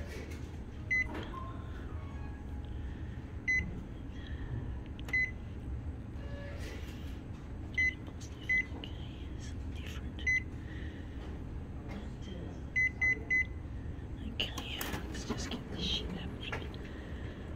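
Photocopier touch-panel key beeps: short single high beeps every second or two as on-screen buttons are pressed, with a quick run of three near the end, over a steady low hum.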